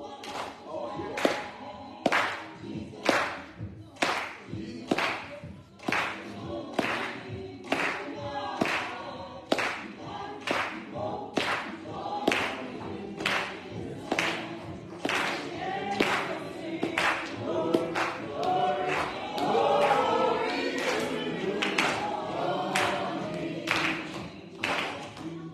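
Congregation singing a gospel hymn together, with hand claps keeping a steady beat about once or twice a second.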